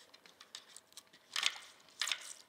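Faint handling noise as a hand presses down on the plastic chassis and roll cage of an Axial SMT10 RC monster truck to flex its single-shock suspension, with small ticks and one brief rustling scrape about one and a half seconds in.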